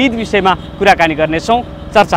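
A man talking in Nepali, over a steady low background of street noise.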